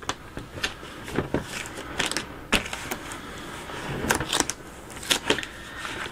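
Hands handling a plastic bucket while working transfer tape off adhesive vinyl and rubbing it down: irregular small clicks and taps with soft rubbing and crackling between them.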